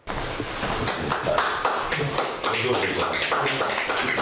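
A rapid, irregular scatter of sharp taps or claps that starts suddenly, with men's voices talking over it.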